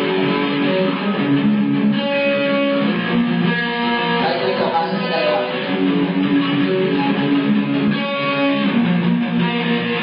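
Amplified guitar strumming chords, with the chords changing about every second, played live as the instrumental intro of a song.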